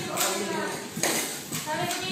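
Voices talking, with two sharp knocks, one just after the start and one about a second in.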